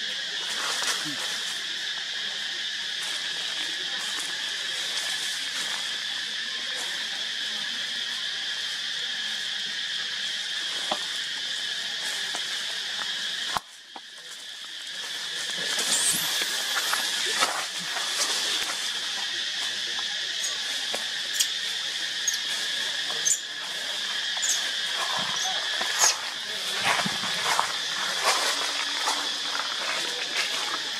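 Steady high-pitched drone of an outdoor insect chorus, broken sharply about fourteen seconds in and then swelling back. Scattered clicks and rustles in dry leaf litter follow in the second half.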